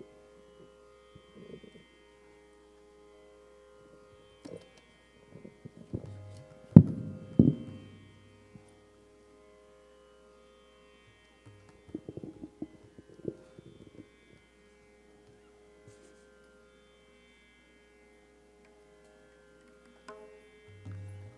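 A steady, quiet instrumental drone of held notes from a kirtan ensemble, with scattered tabla strikes and deep bass thumps, loudest about seven seconds in and again around twelve to thirteen seconds in.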